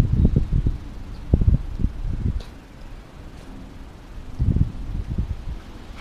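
Wind buffeting the microphone in irregular low gusts, strongest near the start and again past the middle, with a quieter stretch between.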